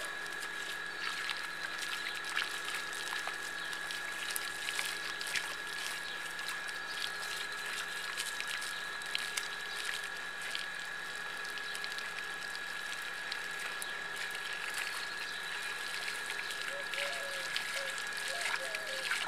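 Water running from a garden hose and splattering onto a cow and the muddy ground as the cow is washed, a steady hiss with many small splashes. A faint steady high tone sits underneath.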